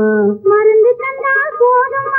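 Old Tamil film song duet: a man's sung note ends about half a second in, and a woman's high voice takes up the melody with held, gliding notes.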